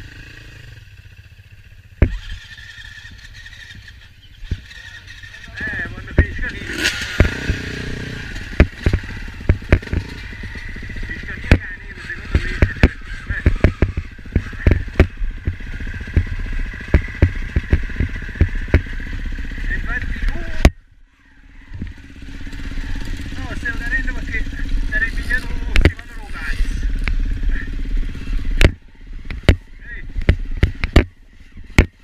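Enduro dirt bike engine running on a rough snowy trail, with many sharp knocks and rattles from the bike jolting over rocks. About two-thirds of the way through the sound drops away suddenly, then builds again.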